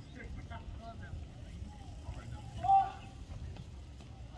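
Outdoor ambience: faint, scattered voices over a steady low rumble. About two-thirds of the way in there is one short, loud, high-pitched call or squeak.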